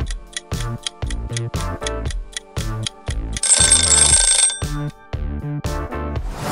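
Upbeat background music with a fast ticking beat, as under a quiz countdown timer. About three and a half seconds in, a bell-like ringing lasts about a second.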